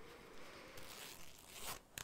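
Faint rustling or scraping noise close to the microphone, swelling for about a second before a sharp click at the end.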